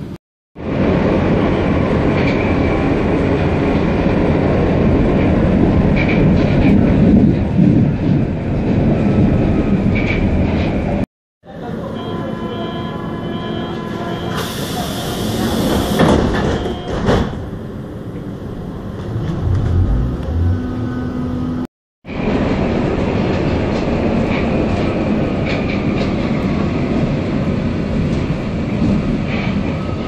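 Steady, loud rumble and rattle inside a moving vehicle, heard in three stretches split by two brief cuts to silence. The middle stretch is quieter, with a few steady tones and a short high hiss.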